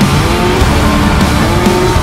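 Trophy Truck race engine accelerating, its pitch climbing steadily, heard from inside the cab with music playing over it.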